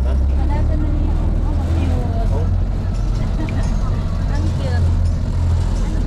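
Low, steady rumble of an open-sided shuttle vehicle riding with passengers aboard, with voices and a laugh near the end.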